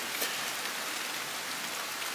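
Rain falling steadily: an even, unbroken hiss.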